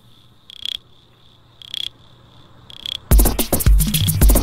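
Minimal techno track in a breakdown: the beat drops away, leaving a faint low drone and a high, cricket-like electronic chirp repeating about once a second, three times. About three seconds in, the full beat with a heavy kick drum comes back in.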